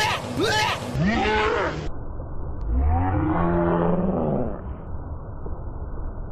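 A dog yelps and whines in fright several times, in short calls that rise and fall. About halfway through comes one long low call that starts deep, rises in pitch and holds for nearly two seconds, like a moo or roar.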